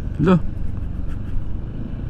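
Honda ADV160 scooter's single-cylinder engine running low and steady as the bike rolls slowly. A brief voice sound comes just after the start.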